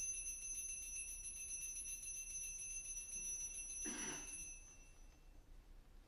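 Altar bells ringing at the elevation of the host during the consecration: a high, steady chime of several clear tones with a fast shimmer, fading out about five seconds in. A brief soft sound comes just before it dies away.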